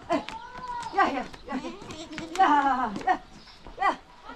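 Goat bleating several times in a row, each call wavering in pitch, the loudest about two and a half seconds in.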